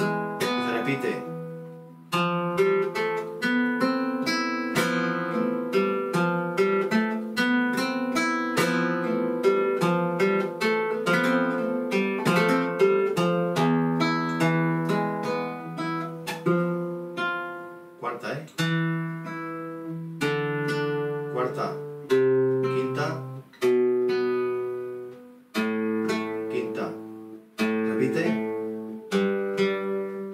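Flamenco guitar playing a soleá falseta slowly: plucked single-note lines and arpeggios run throughout. In the second half a few full chords are struck and left to ring.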